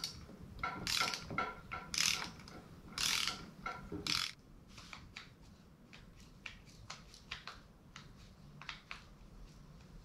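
Ratcheting torque wrench clicking in four short runs during the first four seconds, tightening the cylinder head bolts on a Predator 212 Hemi single-cylinder engine; after that only faint light clicks and taps of the tool being handled.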